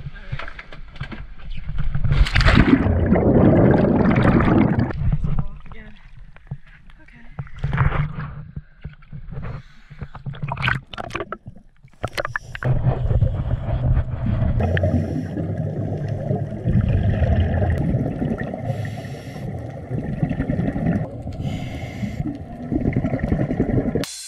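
Water sloshing and splashing around a camera at the surface, then from about halfway the steady, muffled underwater rush of a descending scuba diver's regulator breathing and exhaust bubbles.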